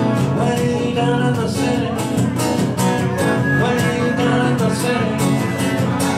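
Acoustic guitar strummed steadily with a trumpet playing held melody notes over it, live music in a small room.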